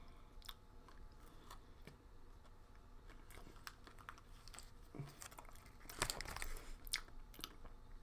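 Faint chewing of a king-size Reese's peanut butter cup filled with Reese's Pieces, the little candy shells crunching between the teeth in scattered crackles. The crunches grow louder and closer together about six seconds in.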